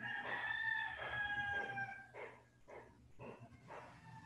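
A bird's long call, held for about two seconds with a stack of tones that fall slightly in pitch, followed by a few short sounds.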